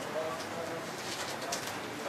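Quiet room tone with a faint, low bird call.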